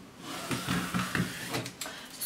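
Faint scratching and rustling of tailor's chalk drawn along cotton fabric, with the tape measure being handled, as a zip-allowance line is marked. There are a few small irregular ticks.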